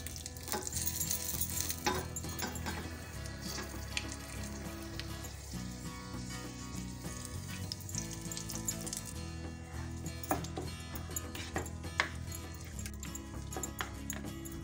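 Butter tempering with whole dried red chillies sizzling and crackling with scattered pops in a small steel ladle, poured over a thick gravy and stirred in with a spoon. Soft background music with a repeating bass line runs underneath.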